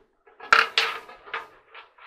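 Handling clatter from the endoscope inspection camera and its cable being worked by hand: a run of sharp knocks and scrapes starting about half a second in, then a few lighter clicks.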